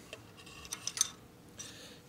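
A quick run of light, sharp clicks, five or so in under half a second, with the loudest about a second in, over a quiet background.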